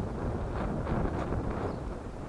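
Wind buffeting the microphone: a steady low rumble with no clear voices over it.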